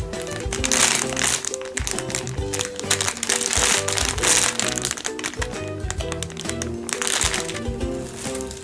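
Crinkling of a plastic squishy-toy package, in several bursts, as the squishy is squeezed through the bag, over background music with a steady melody and beat.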